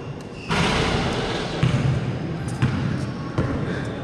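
A basketball bouncing on an indoor court floor, a few separate thuds over a steady hall noise.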